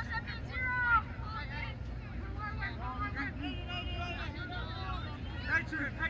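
Several voices calling out and chattering in a crowd, with a few louder shouts, over a steady low rumble.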